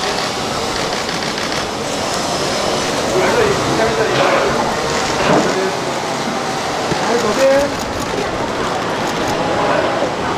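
Press photographers' cameras firing rapid shutter bursts, with the clicking thickest in the second half, over steady chatter from the crowd.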